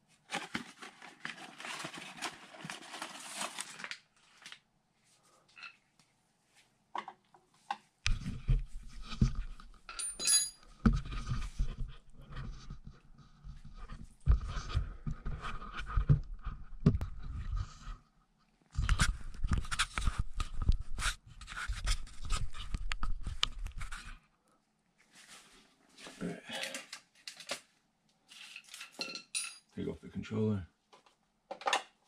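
Rustling, then the heavy bumping and rumbling of the camera being handled and moved, with clicks and metal clinks of tools and burner parts being worked on by hand. Scattered light clicks and clinks come near the end.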